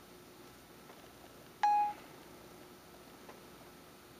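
iPhone dictation tone: one short, steady beep about one and a half seconds in, as the phone stops listening and sends the dictation off, over a faint room background.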